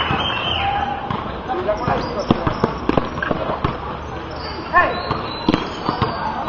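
A basketball bouncing on a concrete court during play: a run of quick dribbles, about three a second, between about two and four seconds in. Voices are shouting over it.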